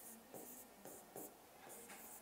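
Felt-tip marker writing letters on a board: a faint string of short scratchy strokes, about half a dozen in two seconds.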